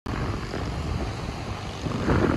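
Wind buffeting the microphone over the steady wash of ocean surf: a continuous low rumble without any clear tone.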